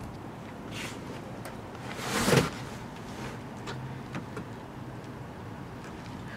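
Low handling noise with one brief scraping rustle about two seconds in.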